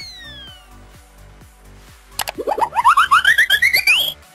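Cartoon sound effects over a quiet music bed: a falling whistle fading out at the start, then, a little past halfway, a quick run of short rising blips that climb higher and higher in pitch and stop abruptly.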